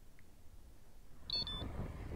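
A Wahoo ELEMNT ROAM bike computer gives a short, high, two-part electronic beep about a second and a half in: its alert for a vehicle approaching from behind, picked up by the rear radar. A low outdoor rumble comes in with it.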